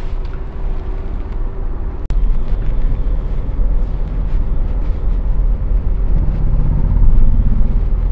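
Low engine and road rumble heard from inside a car, steady and loud. It drops out for an instant about two seconds in and comes back louder, and near the end a low hum rises in pitch as the car picks up speed.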